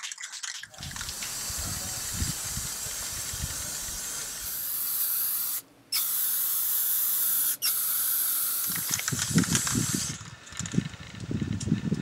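PlastiKote Twist & Spray aerosol paint can spraying steadily for about nine seconds, with a short break a little before six seconds in and a very brief one at about seven and a half. Low knocks of handling come near the end.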